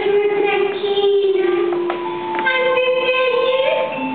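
A woman singing in a childlike voice into a microphone over recorded backing music, holding long notes that step down and then up again.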